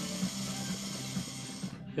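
Air drawn through a glass recycler bong makes a steady hiss that stops suddenly near the end, over background music.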